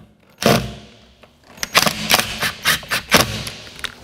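Cordless drill/driver driving a screw into a sheetrock anchor to fix a wall bracket: a sharp knock about half a second in, then the motor whirring with a quick run of sharp clacks for nearly two seconds.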